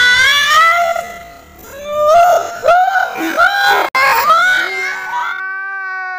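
High-pitched squealing and wailing voices, people reacting to biting into very sour kamias fruit, broken off by abrupt edits. Near the end a steady held tone begins.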